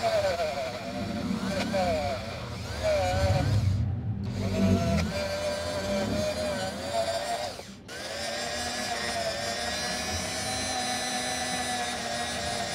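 Handheld Ingco rotary tool with a wire brush wheel running at high speed to scrub rust off a brake caliper part, its whine wavering and dipping in pitch as the brush is pressed on the metal. It drops out briefly twice, then runs at a steady pitch for the last few seconds.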